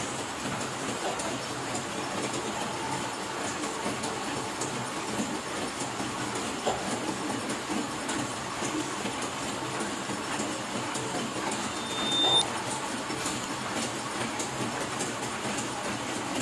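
Heidelberg sheet-fed offset printing press running, a steady dense mechanical clatter from its rollers and sheet-handling gear. A brief high-pitched tone sounds about three-quarters of the way through.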